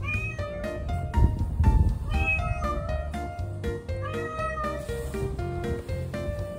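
Calico cat meowing three times, about two seconds apart, over background music with a steady beat; a couple of low thuds sound about a second and a half in.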